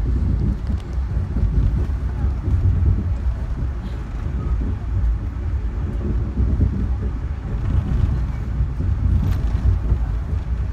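Steady low rumble of a passenger train car rolling along the track, heard from inside the car, with a few faint clicks.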